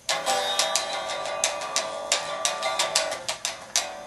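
Electric guitar strummed with a pick: an uneven run of quick strokes over ringing chords.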